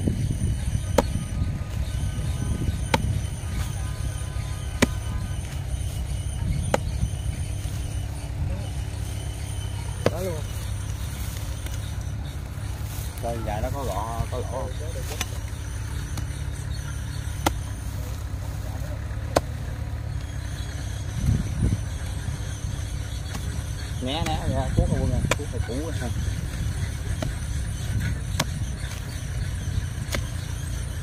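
Hoe blade chopping into rice-field soil and stubble, a sharp knock every few seconds, over a steady low rumble.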